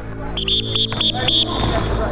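Basketball practice on a gym court: sneakers squeaking, four short high squeaks in the first half, with basketballs bouncing.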